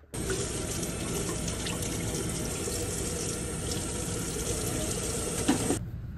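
Steady rush of running water, stopping abruptly near the end.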